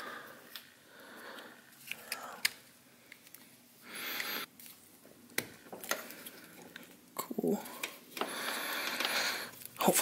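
Plastic headlight wiring connectors being handled and pushed together, with scattered small clicks and rustles of wire and two longer soft hissing sounds. A short hum of voice comes about seven seconds in.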